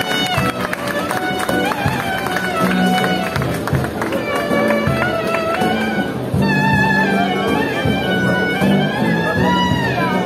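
Street band playing live music on acoustic stringed instruments including guitars. A bending, ornamented lead melody runs over repeated low notes, with a crowd around.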